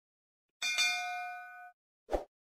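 A bell-like notification ding sound effect, struck twice in quick succession about half a second in. It rings as a chord of several steady tones for about a second and then cuts off suddenly.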